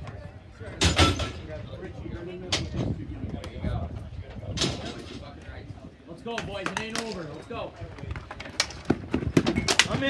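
Ball hockey sticks and ball clacking sharply on a plastic dek-hockey court, one loud clack about a second in, a few scattered ones, then a quick run of clacks near the end as play picks up. Players' and spectators' voices, with one drawn-out shout in the middle.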